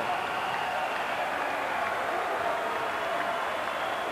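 Basketball arena crowd noise: a steady din of cheering and applause as the first half ends.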